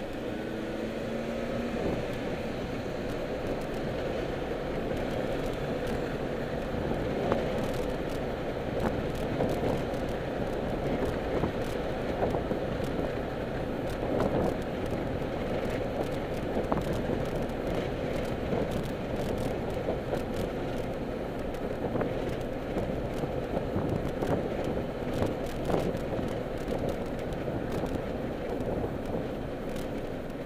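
Road and engine noise inside a moving car's cabin: a steady rumble with scattered small clicks and rattles.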